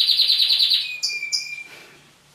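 Pet canary singing: a very fast high trill, then a held whistled note with two brief higher notes over it, fading away near the end.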